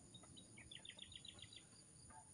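Faint bird call: a quick run of about nine short, high chirps in the middle, after a couple of single notes, over a near-silent background.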